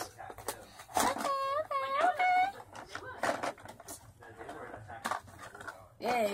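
A high-pitched voice making three short, wordless sliding 'ooh' sounds, one after another, about a second in. Around them are scattered clicks and rustles of a Hot Wheels plastic blister pack being handled and opened.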